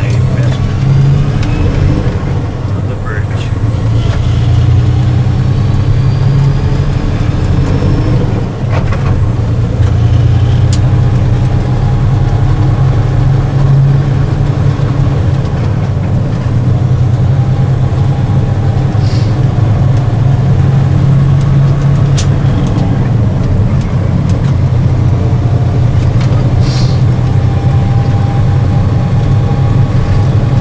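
Steady low engine drone and road noise inside a moving vehicle's cab, with a few brief knocks from the ride.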